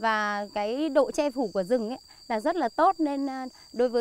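A woman speaking Vietnamese, over a steady high-pitched drone of insects in the background.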